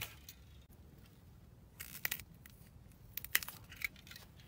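Hand pruning shears snipping at a dragon fruit's stem, with handling rustle: a short rustle a little before halfway, then a few sharp clicks and snips near the end.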